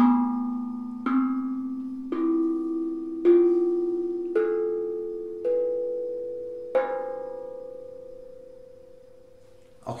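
Homemade steel tongue drum (tank drum) struck with mallets one note at a time: seven clear ringing notes about a second apart, climbing in pitch. The last note is left to fade out over about three seconds.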